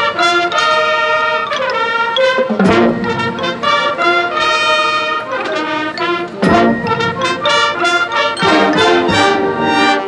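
Marching band brass playing loud held chords that change every second or so, with a few sharp percussion hits, the clearest about two and a half and six and a half seconds in.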